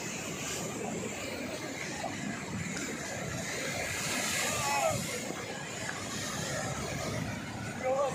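Sea surf breaking and washing over rocky shore boulders, a steady rushing noise that swells about halfway through as a wave bursts on the rocks.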